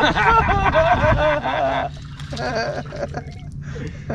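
A man's excited, high-pitched yelling for about two seconds, then shorter calls, as he fights a hooked bass. Water splashes as the fish jumps at the surface.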